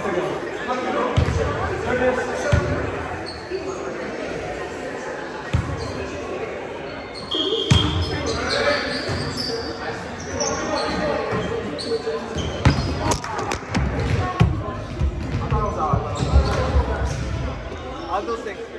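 Volleyball rally in a large, echoing gym: a ball is hit and thuds on the floor again and again, with sharp knocks scattered through the sound.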